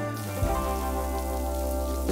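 Background music with held chords and a steady low bass, over the even hiss of water spraying from a shower head.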